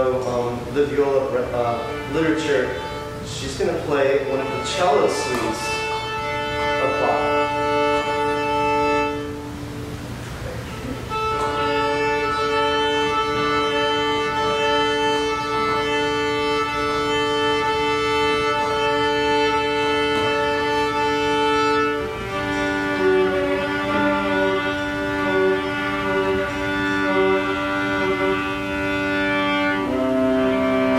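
A viola being tuned: open strings bowed two at a time as long, steady fifths, first the A and D strings, then a lower pair from about twenty seconds in. The first few seconds hold short, sliding notes.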